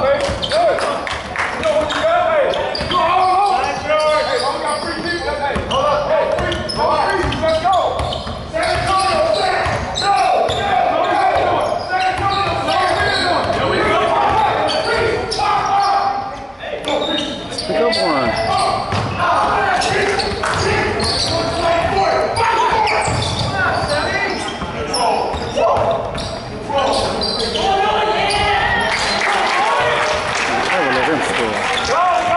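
Basketball game in a large gym: the ball bouncing on the hardwood floor, with players and spectators calling out, all echoing in the hall.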